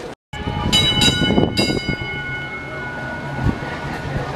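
Tram's bell struck three times in quick succession, its ringing fading out over a couple of seconds, over the low rumble of the tram running along its rails.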